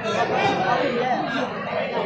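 Several men talking over one another in a huddle, a murmur of overlapping voices.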